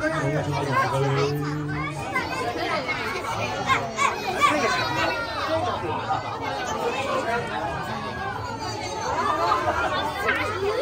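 Crowd chatter: many people talking at once, with children's voices among them.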